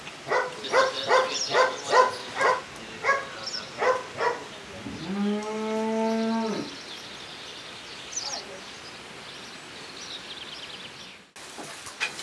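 A dog barking repeatedly, about three barks a second, which stops about four seconds in. Then a cow moos once in a long, level call, followed by quieter farmyard background with faint bird chirps.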